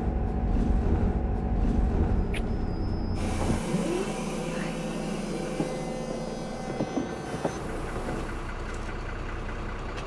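Bus interior: a low engine rumble, then, about three seconds in, a sudden long hiss of compressed air from the bus's pneumatic air system that lasts about four seconds while the engine rumble drops lower, as the bus stops.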